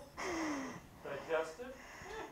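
Faint speech, too quiet or indistinct for any words to be made out.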